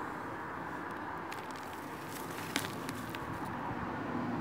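Backyard soil being poured into a plastic tub onto a bed of sand and soil: a soft steady hiss with a few faint ticks.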